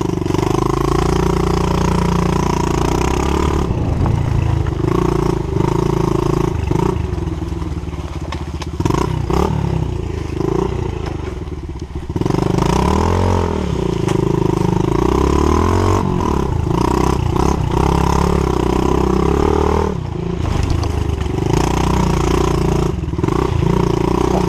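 Pit bike's small single-cylinder engine running while being ridden, the throttle rising and falling over rough ground, with rattling knocks from the bike over bumps. About halfway through the engine eases off, then revs back up.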